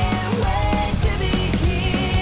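Rock band cover music playing, with electric guitar and a drum kit driving a steady beat.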